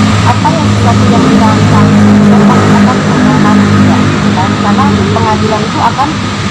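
A loud, steady low motor drone, with a woman talking over it.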